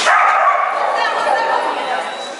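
Dog giving one long, wavering excited whine and yip.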